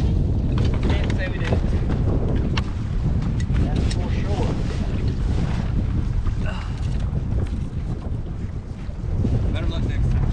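Wind buffeting the camera microphone in a steady, heavy low rumble, with a few faint knocks against the boat deck.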